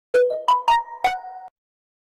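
A short ringtone-like chime melody of five quick, ringing notes at changing pitches, ending about a second and a half in.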